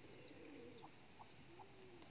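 Faint cooing of a dove: a few low, arching coos, with short faint chirps higher up.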